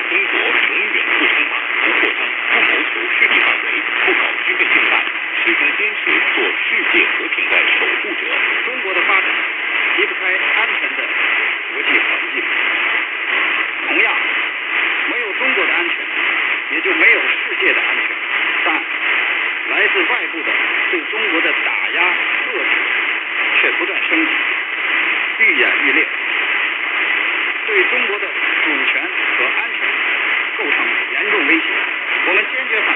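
Weak long-distance AM broadcast on 585 kHz heard through a portable radio's speaker, picked up on its internal ferrite-rod antenna. A voice is buried in steady hiss and static. The sound is muffled and cut off in the treble, with a faint steady whistle.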